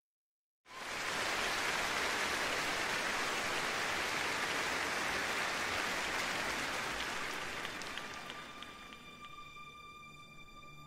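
After a moment of silence, a dense, even rush of noise like rain or applause starts abruptly. Near the end it fades under soft, steady sustained music tones.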